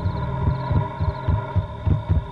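Suspense background score: a held synthesizer drone under a fast, low, throbbing pulse like a heartbeat, about four beats a second.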